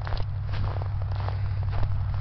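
Footsteps crunching through snow, about two steps a second, over a steady low rumble.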